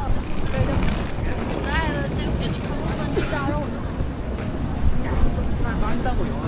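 Wind buffeting the microphone with a heavy low rumble, with voices of passers-by on a busy street rising over it a couple of times.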